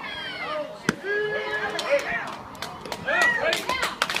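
A single sharp smack about a second in, as a pitched baseball reaches the plate, then several spectators shouting and calling out to the batter.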